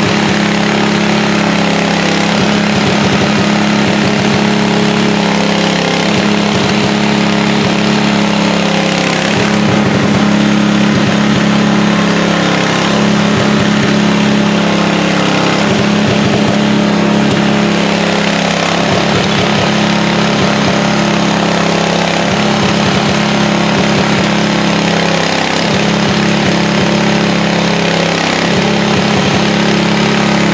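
A large engine running steadily and loudly, its lower note changing every few seconds.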